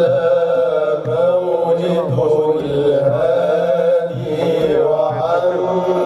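Chanted religious praise song (madih): a melodic line gliding and holding notes, over a low drum keeping a steady beat.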